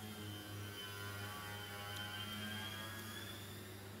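Faint, steady low electrical hum with a light hiss and a thin high whine: the background noise of the recording.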